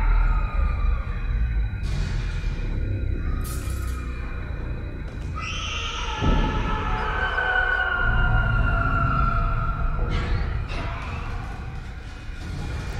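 Tense, eerie suspense score from a TV drama's soundtrack: low rumbling drones and long held tones, swelling about halfway through.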